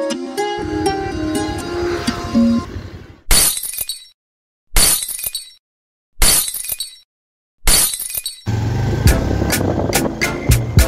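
Edited soundtrack: plucked-string background music that cuts off about three seconds in, followed by four sudden crash sound effects about a second and a half apart, each dying away into silence, as title words appear. Music with a steady beat starts near the end.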